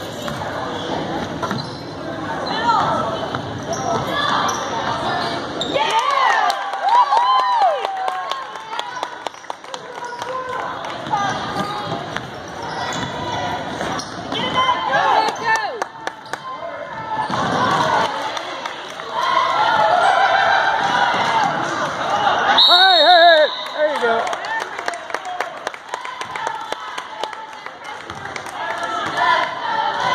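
Basketball game in a gym: a ball bouncing on the hardwood court with repeated knocks, under calls and shouts from players and spectators that ring in the large hall.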